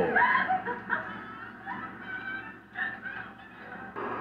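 A man chuckling in short snickers that trail off after a couple of seconds.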